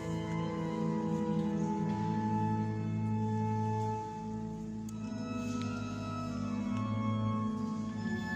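Slow organ music: long held chords that change every second or two.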